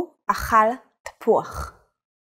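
A woman speaking, slowly saying the short Hebrew sentence 'Hu akhal tapu'ach' ('He ate apple').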